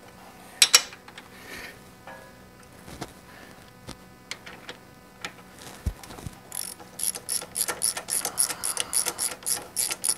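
Socket ratchet clicking as a spark plug is worked loose from a small engine, the clicks coming quickly and evenly, about four a second, over the last few seconds. A sharp clack of metal tools about a second in.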